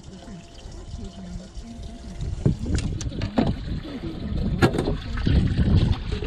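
Water lapping with low wind noise on a small fishing boat, then from about two seconds in a string of knocks, bumps and rustling as someone moves about the boat deck handling gear, the loudest knock just past halfway.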